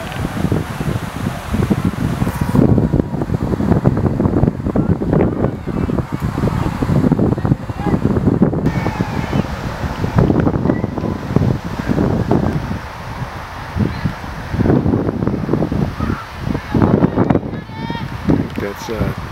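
Wind buffeting the camera microphone in gusts, a heavy low rumble, with scattered distant voices.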